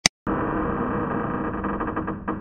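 Two quick mouse-click sound effects, then a sound effect of a heavy steel vault door's locking wheel spinning: a dense, steady mechanical rumble with faint ticks through it.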